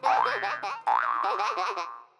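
Springy cartoon boing sound effects: wobbling, bouncing glides in pitch in two runs, the second starting just under a second in and fading away.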